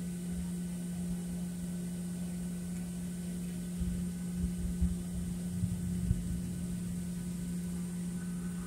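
Steady low hum inside a taxiing Boeing 737 airliner cabin, with a few soft low thumps about halfway through.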